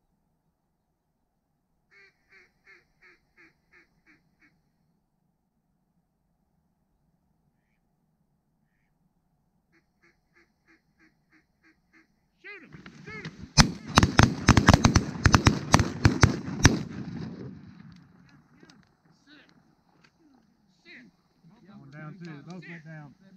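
Geese honking in two short runs, then loud honking broken by a rapid volley of about a dozen shotgun shots over about three seconds, the honking tailing off afterward.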